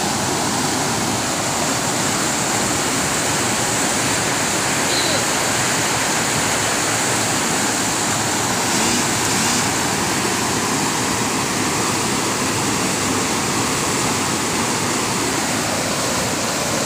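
Fast mountain river rushing over boulders in white-water rapids: a loud, steady, unbroken rush of water.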